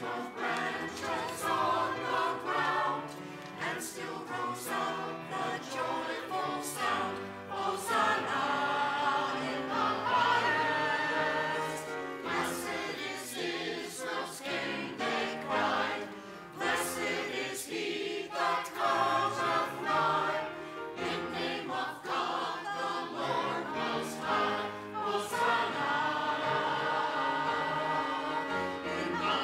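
Mixed church choir of men's and women's voices singing a choral anthem in parts, the voices moving together from phrase to phrase.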